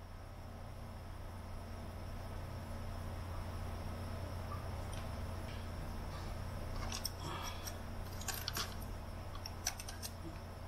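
Small clicks and scrapes of hands and pliers handling the motor wiring inside an open UHER 4000 tape recorder, a few about two-thirds of the way in and one near the end, over a steady low hum.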